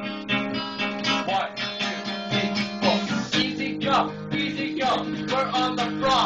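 Acoustic guitar strummed in a steady rhythm, the chords changing a couple of times.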